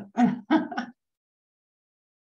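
A woman's voice over a video call makes two short vocal sounds, then the audio cuts to dead silence about a second in.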